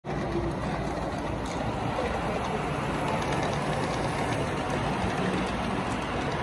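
An S gauge model freight train rolling past on the layout's track, a steady rumble of wheels on rail.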